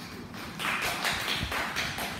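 Classmates applauding, starting about half a second in.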